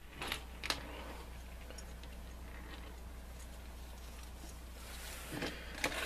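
A few faint light clicks in the first second as wooden storm matches are set down on a plastic cutting mat, then a steady low background hum.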